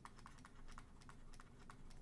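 Faint, quick, irregular clicks and ticks of a stylus tapping and dragging on a pen tablet during handwriting.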